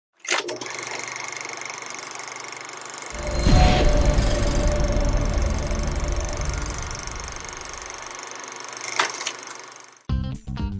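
Sound design for an animated logo intro: a sharp hit, then a steady airy hiss; about three seconds in a deep boom lands and carries on as a low rumble for several seconds, and a sharp click sounds near the end before it fades out.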